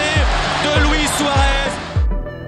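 Background music with a deep, pounding bass beat about every 0.6 seconds, laid over a stadium crowd cheering a goal and a shouting commentator; the crowd and voice cut off abruptly at the end.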